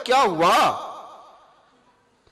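A man's speaking voice ends a phrase on a long word whose pitch falls away, about half a second in. Its echo then fades out slowly over the next second.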